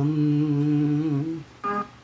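A man's voice holds one long steady note, hummed with closed lips, at the end of a line of a Tamil film song, breaking off about a second and a half in. A short instrumental chord from the accompaniment follows just after.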